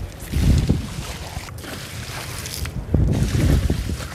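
Wind buffeting the microphone. Near the end, water is poured from a container and splashes onto wet, muddy paving stones.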